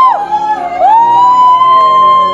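Karaoke singing: a voice holds a long high note, breaks off and dips briefly, then slides back up and holds the same note again.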